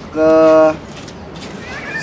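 A man's voice holding one drawn-out syllable, "ke", at a steady pitch for about half a second, then a pause with only low background noise until he starts speaking again at the very end.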